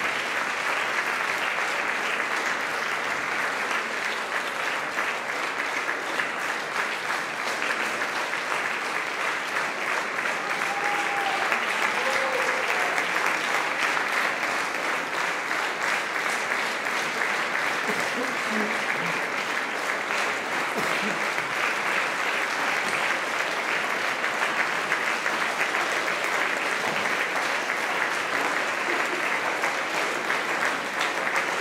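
Audience applauding steadily in a concert hall, a dense, even clapping of many hands that runs on without a break.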